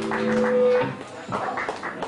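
Amplified electric guitar holding a ringing note that cuts off about a second in, followed by scattered short knocks and brief stray notes from the stage between songs.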